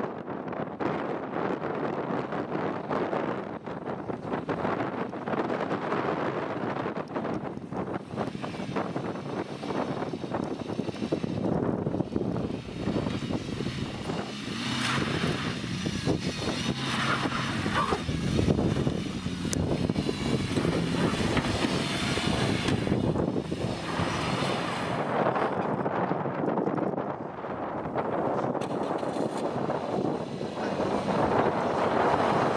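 A small hatchback's engine revving under load as the car creeps up a steep grassy slope, with the tyres scrabbling in churned turf. The engine is strongest through the middle of the stretch, and wind buffets the microphone.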